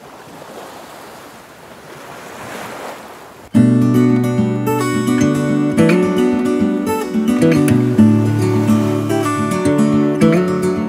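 A rushing, wave-like noise swells for about three and a half seconds, then strummed acoustic guitar music starts suddenly and carries on.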